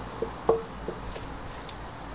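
Empty steel tin can handled on a table: one sharp knock with a short metallic ring about half a second in, then a few faint light taps.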